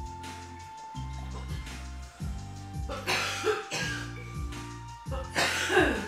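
Background music with a steady, repeating bass pattern. Over it, a man coughs and exhales hard after a bong hit: once about three seconds in and again, louder, near the end.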